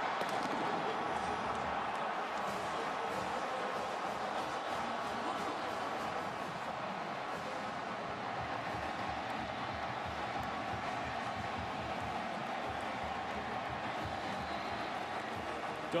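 Large stadium crowd cheering a touchdown: a dense, steady wash of many voices that eases off slightly over the seconds.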